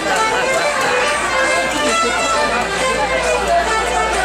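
Two fiddles playing a traditional tune together to accompany a rapper sword dance, with people talking in the background.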